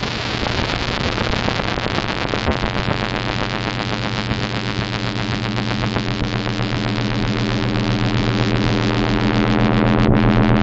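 A dense, static-like wash of noise with a steady low hum that grows stronger and gradually louder toward the end.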